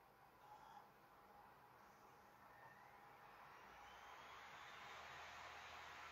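A laptop cooling fan spinning up on power-on, a faint hiss of air that grows steadily louder, with a thin whine rising in pitch.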